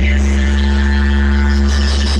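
Loud DJ sound system playing electronic dance music, dominated by a deep, steady bass drone with held low tones.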